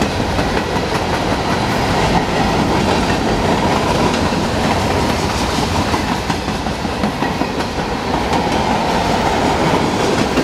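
Freight cars of a mixed freight train, covered hoppers and a tank car, rolling past at close range. Their steel wheels make a steady, loud rolling clatter on the rails, with repeated clicks as the wheels pass.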